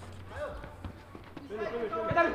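Faint voices of players calling out on a futsal pitch, with a few light knocks of a football being kicked, over a low steady hum.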